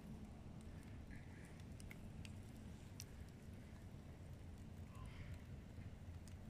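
Faint crackling of a wood fire burning in a metal drum fire pit: a few scattered small pops over a steady low rumble.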